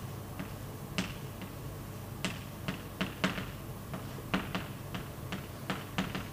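Chalk tapping and scratching on a blackboard as words are written by hand: a dozen or more short, sharp, irregular ticks as the chalk strikes and lifts at each letter.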